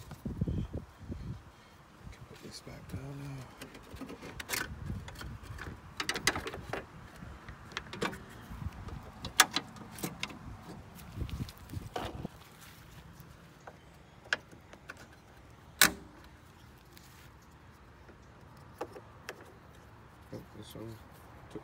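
Plastic clips, connectors and trim around a car's radiator and fan shroud being handled and pressed into place: a series of sharp clicks and knocks with handling rumble. The loudest snaps come about halfway through and again near the three-quarter mark.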